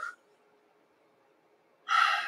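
A man's voice breaks off, followed by near silence. Near the end comes a short, sharp intake of breath.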